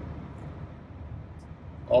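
A steady low rumble of background vehicle noise.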